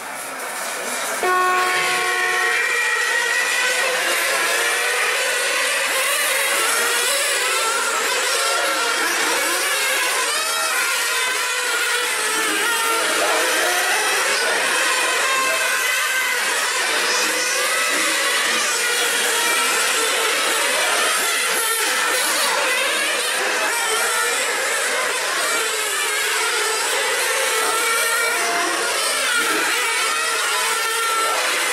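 A pack of 1/8-scale nitro RC racing cars, their small two-stroke glow engines revving high and wailing together as they race around the circuit. A short steady tone sounds about a second in.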